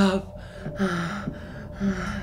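A man gasping and panting with short groaning vocal sounds, several quick breaths in a row, as he comes round from sedation in fright. A low steady drone sits underneath.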